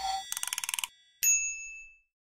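Logo sting sound effect: about half a second of rapid fluttering rattle, then a single bright chime struck about a second in that rings out and fades.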